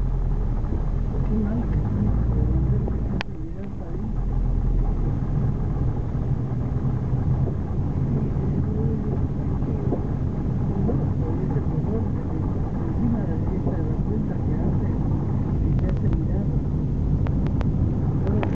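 Steady low rumble of a car's engine and tyres heard from inside the cabin while driving, with a single sharp click about three seconds in.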